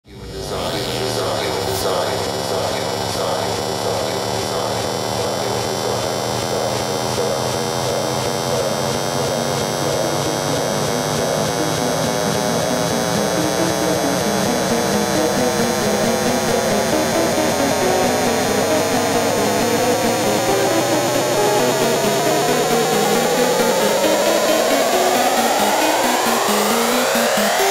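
The opening of a downtempo electronic track: a dense synthesizer drone that pulses quickly, with its tones bending upward into a rising sweep near the end.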